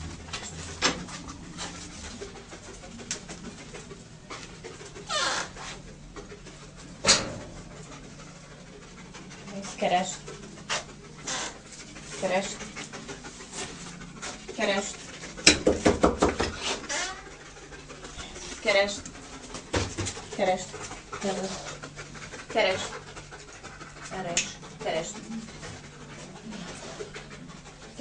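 A dog panting, with a quick run of breaths about halfway through.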